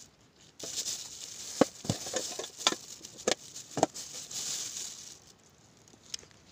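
Rustling and handling of small objects, with several sharp clicks and knocks, while a flashlight is being put together by hand. The sounds stop about a second before the end.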